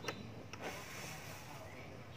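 Oxy-acetylene torch flame hissing steadily while a filler rod is worked into a joint on a metal air-gun tube, with a couple of sharp clicks right at the start.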